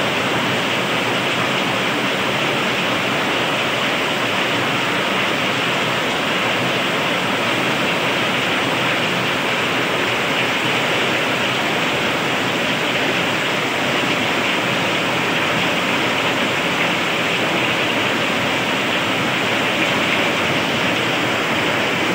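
Heavy monsoon rain pouring down, a loud, steady, unbroken hiss of rain on roofs, cars and pavement.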